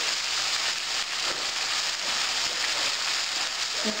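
Chopped vegetables and chicken sizzling in a pot over low heat, a steady, even hiss.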